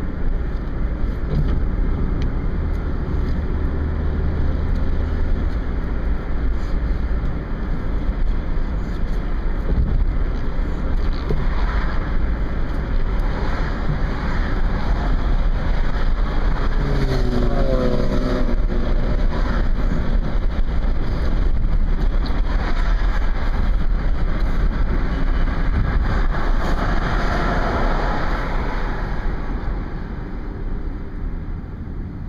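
Steady road and engine noise inside a moving car's cabin, with a deep low rumble. A brief wavering pitched sound rises out of it a little past halfway.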